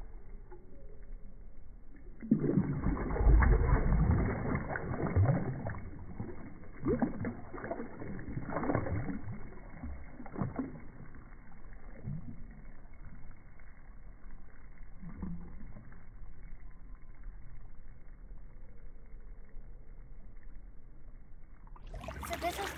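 Pool water sloshing and splashing as legs wade down submerged steps. It is loudest and busiest over the first several seconds, then settles to quieter, scattered splashes.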